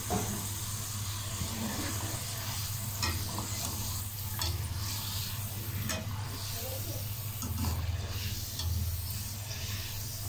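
Potato sticks sizzling steadily in hot ghee during their first, partial fry, with several clinks and scrapes of a wire-mesh skimmer stirring them and lifting them out of the pan.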